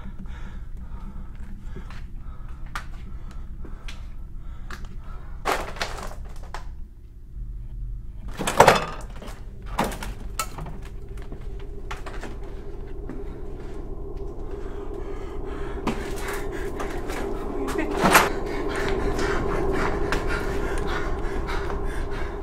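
A few sharp knocks and thuds over a steady low hum, which swells and grows louder over the second half.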